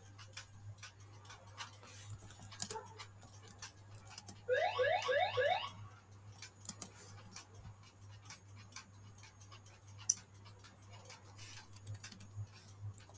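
Computer keyboard keys clicking on and off as text is typed, over a steady low hum. About four and a half seconds in, a quick run of five rising chirps is the loudest sound.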